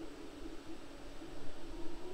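Background room noise: a steady low hiss with a faint low hum.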